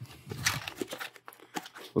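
Cardboard box and plastic coin flips rustling and crinkling as gloved hands pull the coins out, with scattered light clicks.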